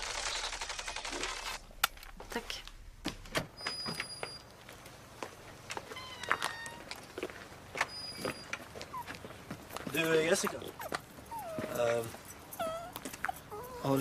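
A shootout recording played back from a recording wristwatch: a scatter of sharp, shot-like cracks with shouting voices, and two short high beeps about four seconds apart.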